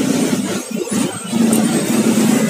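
Passing road traffic, mainly motorbike engines, a steady hum that dips briefly about a second in.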